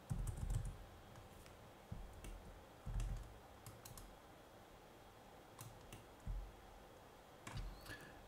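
Computer keyboard keystrokes and mouse clicks in a few short, scattered clusters, with quiet room tone in between.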